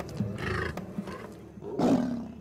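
Young lions snarling at one another, with a louder snarl near the end: aggression as they establish dominance.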